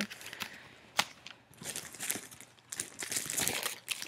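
Plastic packaging crinkling and rustling as it is handled, with a sharp click about a second in.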